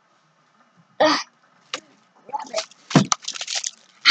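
A child's short "uh", then from about two seconds in the irregular crinkling and rustling of a clear plastic bag being grabbed and handled, with one harder bump about three seconds in.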